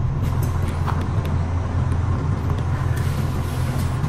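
Steady low rumble with a few faint clicks and taps.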